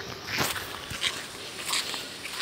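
Footsteps of several people walking in flip-flops on a sandy, gritty dirt path: short scuffing crunches about every two-thirds of a second.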